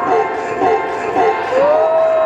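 Dance music for the performance, with a steady beat of about two beats a second. A long held note slides up and holds from about one and a half seconds in.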